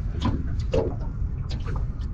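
Steady low rumble of wind on the microphone aboard a small boat drifting on open water, with a few faint ticks.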